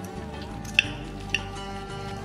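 Background instrumental music, over which metal cutlery clinks sharply on a plate twice, about half a second apart, as food is cut.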